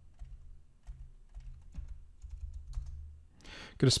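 Computer keyboard typing: scattered faint key clicks over a low steady hum.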